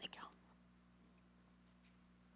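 Near silence: room tone with a low steady hum, after a brief soft breathy sound at the very start.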